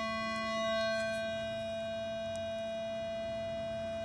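A steady, buzzy electronic tone holding one pitch throughout, as a metal detector gives when held over metal, with a few faint clicks.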